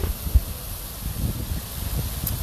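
Wind buffeting the microphone as an uneven low rumble, with two short low thumps near the start.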